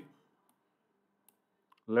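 Near silence broken by two faint computer-mouse clicks in the second half.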